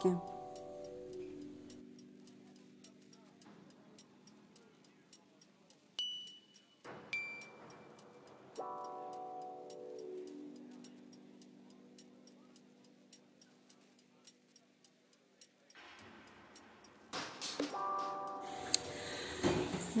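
Eerie added soundtrack: drawn-out pitched tones that swell and slowly fade, over a steady clock-like ticking. Two short high beeps come about six and seven seconds in.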